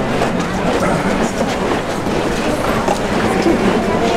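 Dense crowd murmur over a steady shuffling rumble, typical of costaleros' feet sliding on the pavement as they carry a processional paso.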